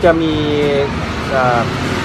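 A man's voice drawing out one held, level syllable as he hesitates, then a few quick words, over steady street traffic noise.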